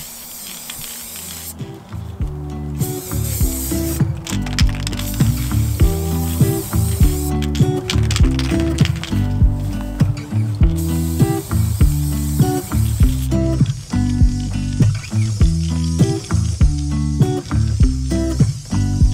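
Background music, with the hiss of an aerosol spray paint can being sprayed in several long bursts over it.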